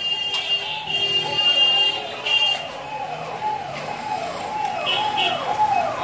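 An electronic siren-like tone repeating a falling sweep about twice a second. In the first half a high steady tone sounds over it.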